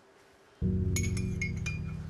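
A metal spoon clinking against the inside of a ceramic mug as tea is stirred, a quick run of light ringing clinks starting about a second in. Background music with deep sustained bass notes comes in about half a second in and is the loudest sound.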